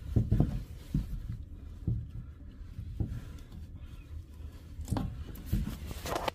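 Handling noise from hand-threading a braided stainless toilet supply line's coupling nut onto the fill valve under the tank, with a few light, scattered knocks and scrapes.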